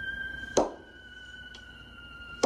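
Horror film soundtrack: eerie music of steady held high tones, cut by one sharp knife stab a little over half a second in.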